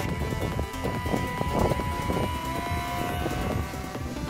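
Electric motor and propeller of a WLtoys F959 Sky King RC glider whining at launch, the whine steady at first, then dropping to a lower pitch about halfway through. Wind buffets the microphone and background music plays.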